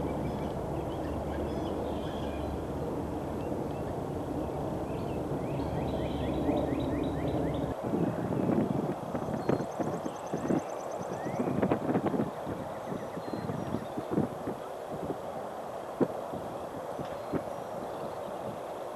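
Outdoor ambience of wind rumbling on the microphone, with birds singing short trilled phrases. Through the second half, uneven gusts buffet the microphone. One sharp click comes near the end.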